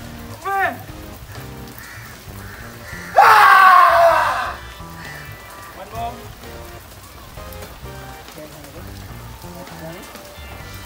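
Background music with a person's voice: short rising-and-falling vocal sounds near the start, then a loud drawn-out cry about three seconds in that lasts over a second.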